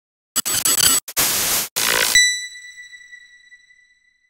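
Logo intro sound effect: three loud bursts of hiss-like noise in the first two seconds, then a single high ringing tone that fades away over about two seconds.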